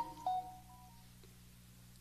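A pause in a man's speech: the tail of his last word and a few faint steady tones in the first second, then quiet room tone with a low steady hum.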